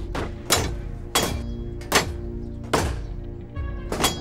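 A run of about five heavy, sharp thuds, roughly evenly spaced and each with a short ring after it, over a dramatic music score.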